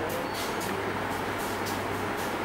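Steady low hum under an even background hiss: room tone around a running lab bench, with no distinct event.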